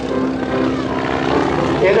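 Boeing-Stearman biplane's radial engine and propeller droning at a steady pitch through an aerobatic barrel roll. A PA announcer's voice starts up near the end.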